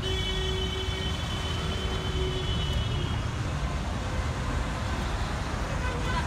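A small car driving past slowly over a steady rumble of street traffic. A steady tone with a high whine above it is held through the first three seconds, then stops.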